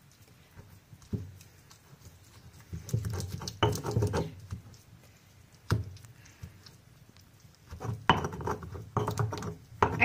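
Stone molcajete and pestle crushing and grinding tomatoes into a chile de árbol salsa: irregular bouts of wet mashing and sharp stone knocks, with short pauses between.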